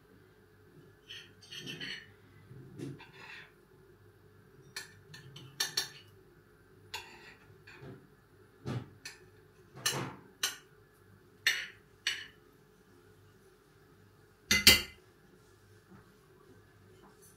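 A fork and serving utensil clinking and scraping on a ceramic plate as food is dished up, in short scattered clicks about once a second. The loudest is a sharp double knock near the end.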